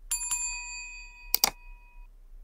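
Subscribe-animation sound effects: a quick double click that sets off a bell ding, which rings on and fades over nearly two seconds. A second sharp double click comes about a second and a half in.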